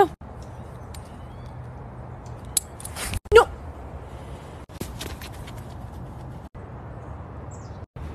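Steady low outdoor background rumble with a few brief clicks, and a woman's single sharp shout of 'No!' about three seconds in.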